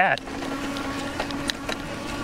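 Electric bike rolling over bumpy grass: a steady low hum under a rushing noise, with a few sharp clicks and rattles from bumps past the middle.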